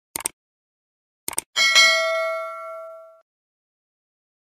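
Subscribe-button animation sound effects: two quick mouse clicks, then another pair of clicks about a second later. These are followed by a bright bell ding that rings out and fades over about a second and a half.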